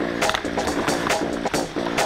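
Background music with a steady, quick beat and short repeating notes.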